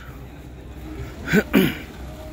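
Low steady outdoor rumble, with a brief two-part vocal exclamation from a person about a second and a half in.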